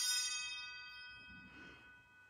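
Altar bells ringing out and dying away after being rung at the elevation of the chalice during the consecration, several high bright tones fading together.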